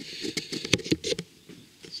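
Handling noise: a quick run of light taps and rustles as the camera is moved and album covers are handled, dying away after about a second.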